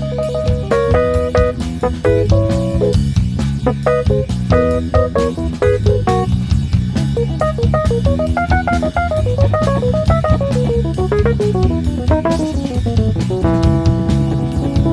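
Funk band playing an instrumental passage on drum kit, electric bass, electric guitar and keyboard, with no singing. About halfway through, a fast run of notes climbs and then falls back down.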